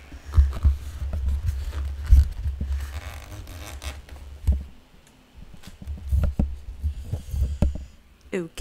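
Unboxing handling noise: the turntable's clear plastic wrap crinkling and its polystyrene foam corners scraping as it is lifted out of the box, over repeated low thumps and bumps, with a brief quieter lull around the middle.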